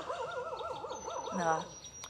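An animal's wavering call: a pitched tone that wobbles up and down about seven times a second for roughly a second and a half. A thin, steady, high tone comes in about halfway through.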